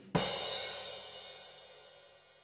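A single cymbal crash, struck just after the start, ringing and fading away steadily over about two seconds.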